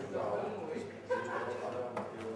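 Indistinct voices talking in the background, with a brief higher-pitched call about a second in.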